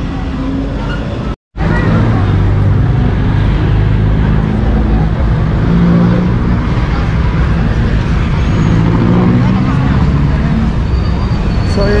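Busy road traffic close by, with buses and other vehicles running in a continuous low rumble. The sound drops out completely for a moment about one and a half seconds in.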